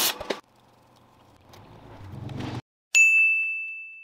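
MIG spool-gun welding arc crackling, stopping about half a second in. Then a faint low hum, and near the end a single sharp, bell-like ding that rings down slowly.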